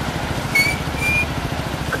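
Busy morning street traffic: a steady low rumble of motor scooters and cars, with two brief high-pitched squeaks about half a second and a second in.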